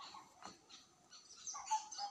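Faint chirping of small birds, short high calls coming and going, with a brief click about half a second in.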